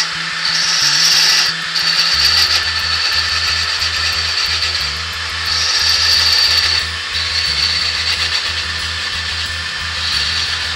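Parting tool cutting into a spalted ash goblet spinning on a slowly running wood lathe, parting it off from the waste: a high whine that swells and eases several times as the tool is pushed in.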